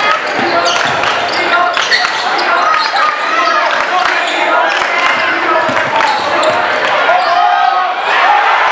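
Basketball dribbled on a hardwood gym floor during live play, a quick series of sharp bounces, under shouting and talking from players and crowd in the gym.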